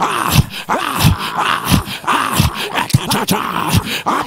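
A man praying loudly in tongues, in short, harsh, guttural syllables that come several times a second.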